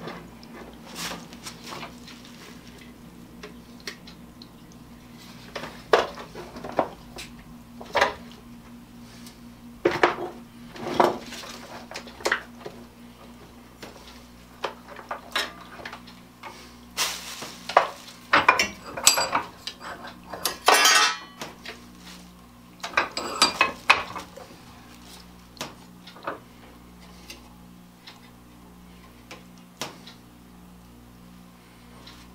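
Irregular metallic clinks, clatter and knocks as a small rotisserie motor's housing and hand tools are handled at a workbench while the unit is being taken apart, busiest in the second half.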